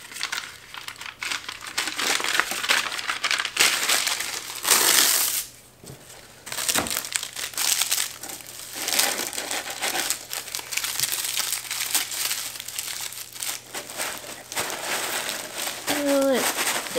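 Paper packing material rustling and crinkling as it is handled: kraft honeycomb wrapping paper and crinkle-cut paper shred being worked into a shipping box. It comes in irregular bursts, with a louder burst about five seconds in and a short lull just after.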